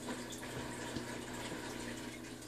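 Faint, steady trickle of water in a small turtle tank, with a low hum underneath.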